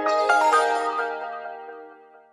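Short musical logo sting for Kia: a few notes struck in quick succession that ring out and fade away.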